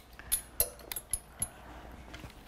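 A quick run of five or six light clinks, each with a short high ring, about a quarter second apart.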